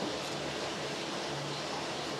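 Steady background hiss with a faint low hum underneath and no distinct events.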